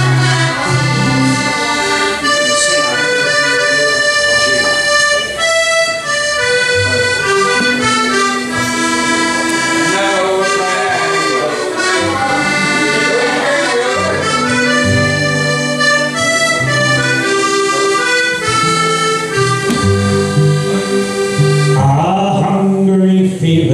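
Live folk band playing an instrumental tune, with button accordion and piano accordion carrying the melody over acoustic guitar and bodhrán.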